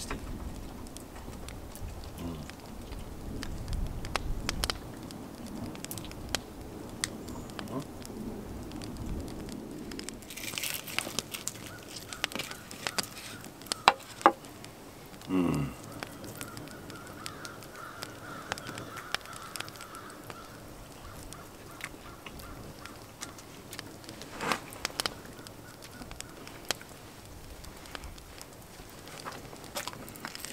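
Wood fire crackling in an open hearth, with scattered small clicks and soft handling sounds of fingers pulling apart roast chicken in a wooden bowl.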